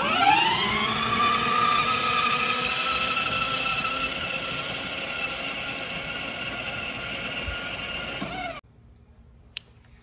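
A child's battery-powered ride-on toy police motorcycle whining as it pulls away, its pitch rising quickly at first and then holding steady while slowly growing quieter, before cutting off abruptly near the end.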